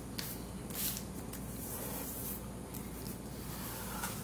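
A sheet of paper folded in half being pressed and rubbed under the fingers to sharpen its crease: a few short, dry swishes of fingers sliding on paper.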